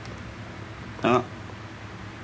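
A person's voice: one short syllable about a second in, over a steady low hum.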